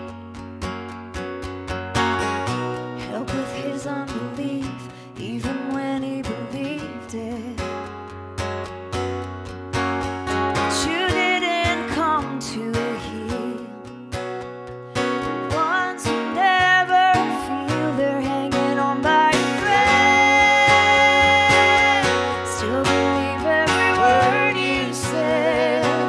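Live acoustic song: an acoustic guitar strummed and picked under a woman's singing voice, with a long held sung note near the end.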